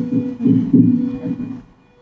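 Loud, muffled low-pitched throbbing from a video clip played back over the venue's speakers, with a faint steady hum under it; it drops away near the end.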